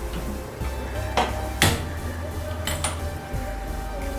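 Kitchenware clinking: four sharp knocks, the loudest about a second and a half in and the last two in quick succession, over steady background music.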